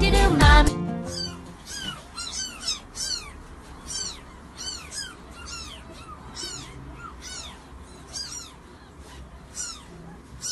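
Young kittens mewing over and over, thin high calls about two a second, each rising then falling in pitch. A burst of music fills the first second.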